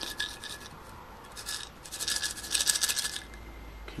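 Wooden toothpicks rattling inside a plastic toothpick dispenser as it is shaken by hand, in several short bursts, the longest and loudest about two to three seconds in.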